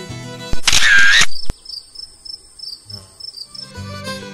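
Bluegrass fiddle-and-guitar music breaks off and a loud camera shutter sound is heard. Then comes a couple of seconds of cricket chirping, a steady high trill with regular pulses, before the music comes back in near the end.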